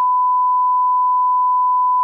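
Steady 1 kHz sine-wave test tone, the reference tone that goes with SMPTE colour bars.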